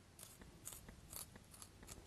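Pencil being sharpened: about five short, faint scraping strokes, roughly every half second.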